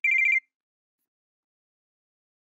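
Electronic pager beep: a quick trill of high beeps lasting under half a second.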